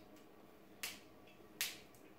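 Two sharp clicks, about three-quarters of a second apart, as fingers pick and pry at the tight plastic seal on the neck of a sealed absinthe bottle.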